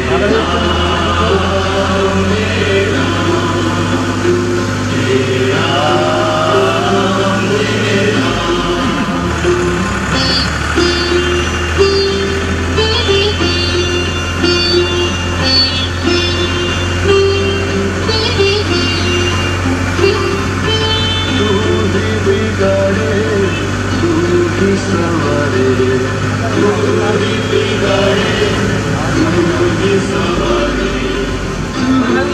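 Devotional singing with music, accompanied by held notes, over a steady low hum like a vehicle engine running.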